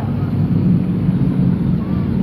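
Engines of a pack of junior sedan race cars running around a dirt speedway oval, a steady low drone.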